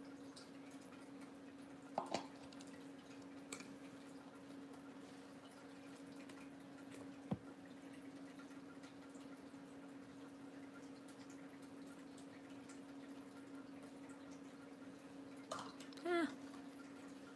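Quiet room with a steady low hum, over which plastic craft items are handled: a brief knock about two seconds in, a sharp click near the middle and a light tap near the end.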